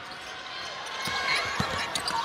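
A basketball dribbled on a hardwood arena court, a few low thuds, over steady arena crowd noise.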